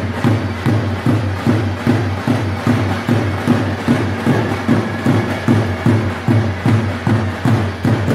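Live folk dance music led by a large davul bass drum, beaten in a steady rhythm of about three strikes a second.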